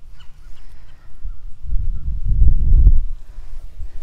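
A low, muffled rumble of buffeting on the phone's microphone. It swells about a second in, peaks in the middle and fades before the end.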